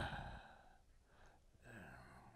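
An elderly man's hesitant "uh" trailing off into a sigh, then a quiet pause with a faint voiced murmur near the end.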